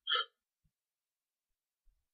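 A brief voice sound, a quarter second or so, right at the start, then near silence.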